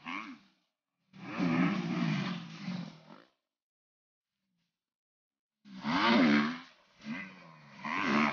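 Dirt bike engine revving in four short bursts, the pitch rising and falling within each, with dead silence between them.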